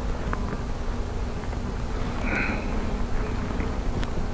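Honeybees buzzing around an open hive frame, a steady hum over a low rumble.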